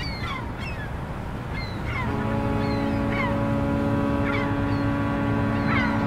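Steady road and engine noise while riding in an open-sided vehicle, with a series of short high falling chirps. About two seconds in, a vehicle horn sounds one long, steady blast that lasts about four and a half seconds.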